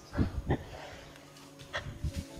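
Short breathy grunts from a macaque: two in quick succession in the first half-second, then one more near the end.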